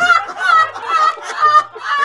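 A woman's loud, high-pitched laughter in repeated bursts, with a man laughing along.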